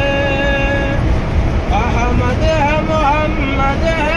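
A boy's solo unaccompanied voice reciting a naat, a devotional poem in praise of the Prophet, in an ornamented, wavering melody: a long held note ends about a second in, and after a short pause the chant resumes with quick melodic turns. A vehicle's low rumble runs underneath.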